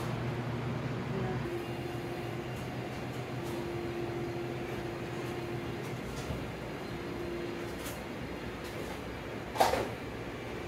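Steady low mechanical hum of a room, with a faint tone that comes and goes, and one sharp knock near the end.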